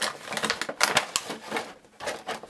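Clear plastic clamshell insert and cardboard of a Funko Pop box being handled as the insert is slid out of the box, a quick irregular run of plastic crinkles and clicks.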